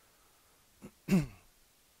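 A man coughs once to clear his throat, about a second in.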